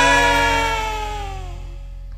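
A live campursari band's music ends: a held final note slides slowly down in pitch and fades out over about a second and a half, leaving only a low amplifier hum.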